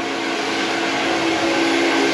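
Handheld hair dryer blowing on a head of hair: a steady rush of air with a constant motor hum underneath.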